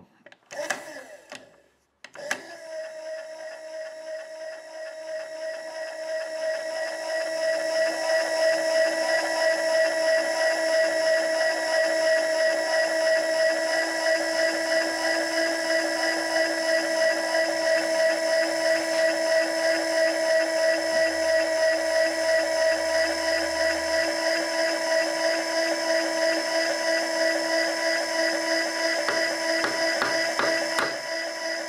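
Milling machine table driven by a small electric motor, traversing the vise past a dial indicator while it is trammed. The steady whine starts with a click about two seconds in, grows louder over the next few seconds, then holds even with a fast flutter.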